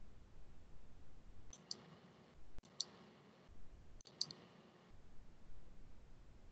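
A few faint clicks in three short clusters, some in quick pairs, over low background hiss.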